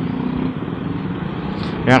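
Motorcycle engines idling and creeping in slow, packed traffic: a steady low engine hum with street noise. A word of speech comes in at the very end.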